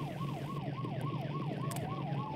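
Emergency-vehicle siren in a fast yelp, its pitch sweeping up and down about three or four times a second over a steady low hum. Near the end a second, slower siren tone starts rising.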